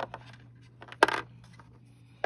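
Small plastic toy pieces knocking against a plastic dollhouse: a light tap, then a sharp clack about a second in with a brief ring.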